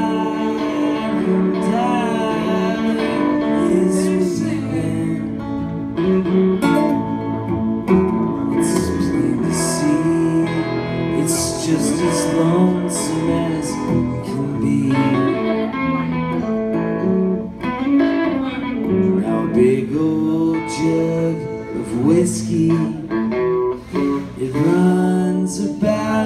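Live country band of acoustic guitar and two electric guitars, one hollow-body and one solid-body, playing an instrumental passage between sung verses, the acoustic strummed under bending electric lead notes.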